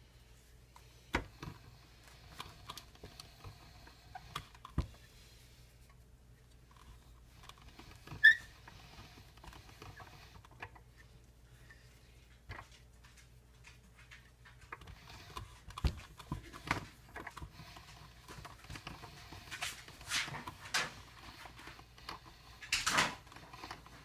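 Hand-cranked pasta roller and sheets of dough being handled: scattered clicks and knocks with soft rustling. The sharpest click comes about eight seconds in, and near the end there is a busier run of clicks and rustles. A faint low hum runs underneath.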